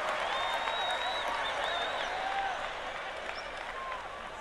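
Stand-up comedy audience applauding and cheering, with a high whistle in the first two seconds. The applause slowly dies down.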